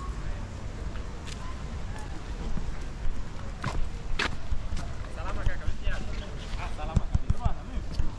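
Outdoor walking ambience: a steady low rumble with people talking in the background in the second half. There are two sharp clicks around the middle and a few dull knocks near the end.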